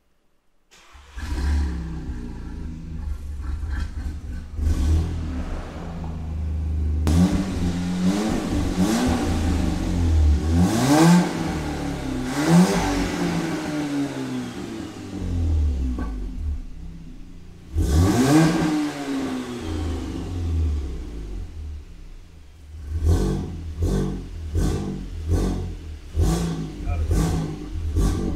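Built, big-turbo Mk7 Volkswagen Golf R turbocharged four-cylinder running while stationary in park, revved up and down several times. Near the end come quick short blips of the throttle.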